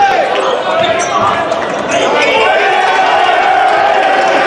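Loud in-gym game sound during a basketball possession: a basketball bouncing on the hardwood court, with shouting voices and the crowd echoing around the hall.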